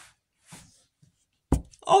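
A woman's speaking voice in a short pause: the end of a drawn-out word fades out, a faint breath follows, then a brief low thump just before she starts speaking again near the end.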